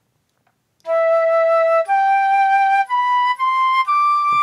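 Sampled flute notes played back by a browser music app, starting about a second in: a rising phrase of four held notes, two longer ones and then two shorter ones.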